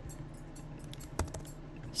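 A few scattered computer keyboard key presses, over a faint steady hum.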